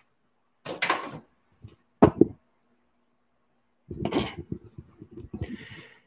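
Handling noise from a handheld microphone: a short knock about a second in, a sharper one about two seconds in, and a longer stretch of rubbing and knocking from about four seconds in, over a faint steady hum.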